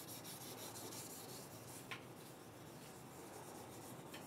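Faint rustling and rubbing as someone moves close to the microphone, with one small click about two seconds in.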